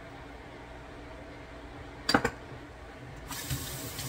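Olive brine poured from a jar into a glass bowl of chopped vegetables: a single sharp clink about halfway through, then the splashing pour of the liquid near the end.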